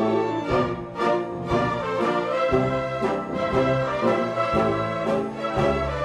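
Symphony orchestra of strings, woodwinds and brass playing in full, with notes on a steady pulse about twice a second.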